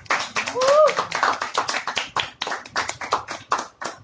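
A small audience clapping, uneven claps from a few people, with a voice calling out with a rising pitch about half a second in.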